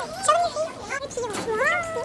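Girls' high, wordless voices in a classroom, with one long call that rises and then falls about a second and a half in.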